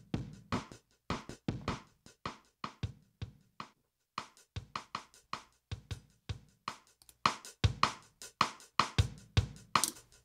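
Acoustic-style drum loop playing a steady beat of kick, snare and cymbals. It breaks off briefly just before the fourth second, and from about seven seconds in the hits come louder and brighter.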